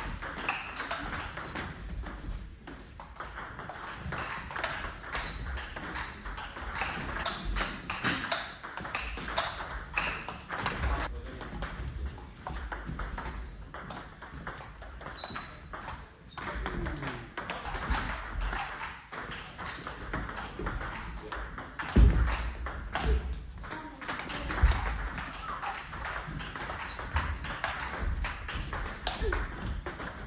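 Table tennis rallies: the ball clicks back and forth off the rackets and the table in quick exchanges, with short breaks between points. There is a single heavier thump about two-thirds of the way through.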